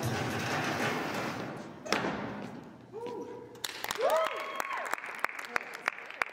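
Music fades out, then a single thud about two seconds in. After it, a few people in a small audience call out and cheer, with scattered clapping near the end.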